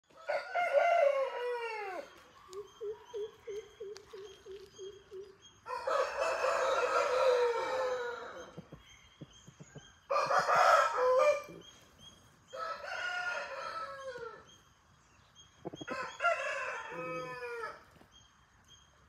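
Aseel roosters crowing: five long crows, several trailing off downward at the end. Between the first two crows comes a run of low clucks, about four a second.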